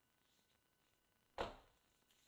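Near silence, then a single short thump about one and a half seconds in.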